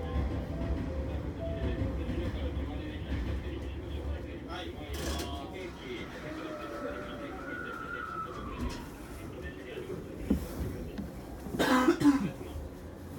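Steady low hum inside the driver's cab of an electric commuter train standing at a platform, with faint voices behind it. Midway a whine rises and then falls. Near the end a short loud noise stands out.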